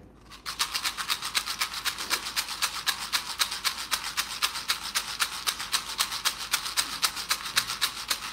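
Handheld ceremonial rattle shaken in a fast, even rhythm, about five or six shakes a second, starting about half a second in: a dry, bright rattling with nothing low in it.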